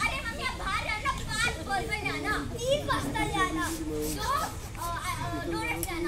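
Children's voices speaking lines of dialogue almost without a break.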